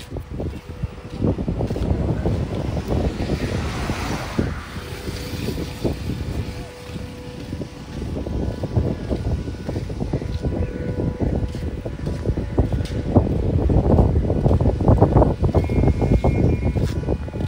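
Wind buffeting the phone's microphone in rough gusts, heaviest near the end, with a rushing swell that rises and fades about four seconds in.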